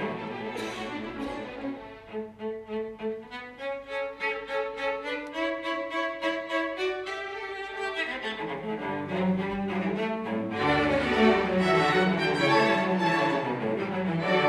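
Solo cello playing a quick run of separate, evenly spaced notes over light accompaniment. About eight seconds in the string orchestra joins, and a little later the low bass comes in; the music grows fuller and louder.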